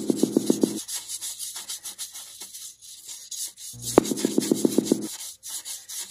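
Paintbrush scrubbing and dabbing paint onto a canvas: a steady scratchy rub of bristles over the surface. Two short bursts of rapid tapping come through, one at the start and one about four seconds in.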